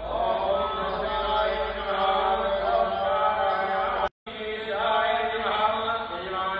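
A Hindu priest chanting puja mantras into a microphone in a steady, sing-song recitation. The audio cuts out for a split second about four seconds in.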